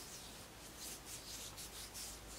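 Fingers rubbing oil into the skin on the back of a hand: faint, soft swishing strokes repeating several times a second.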